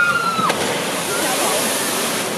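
A person's long, held scream breaks off about half a second in as a log flume boat starts down the drop. Then rushing, splashing water fills the rest as the boat runs down the chute into the splash pool.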